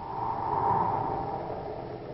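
A rushing swell of noise in an old-time radio drama transcription, loudest around half a second to a second in and then fading away.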